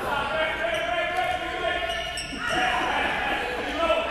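Spectators' long, high-pitched shouts echoing in a gym, breaking off about halfway and starting again, with a basketball bouncing on the court.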